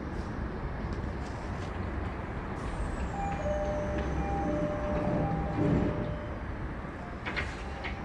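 Odakyu 1000 series commuter train's sliding doors closing: a two-note electronic chime sounds for about three seconds, the doors shut with a thump a little after halfway, and a short hiss of air follows near the end, all over the steady hum of the standing train.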